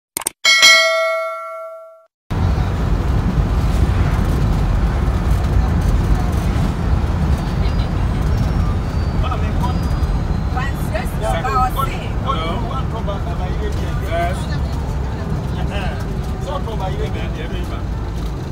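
A bell-like chime from the subscribe-button sound effect rings and fades. Then, about two seconds in, the steady low rumble of a vehicle driving on a paved road begins, with voices talking over it from about halfway.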